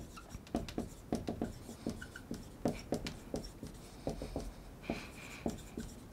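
Dry-erase marker writing on a whiteboard: a quick run of short strokes and taps, with a few brief squeaks of the tip.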